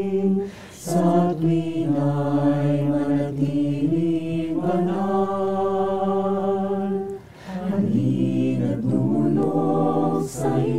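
Mixed choir of men and women singing a cappella in harmony, holding long chords, with two short breaks for breath: about half a second in and about seven and a half seconds in.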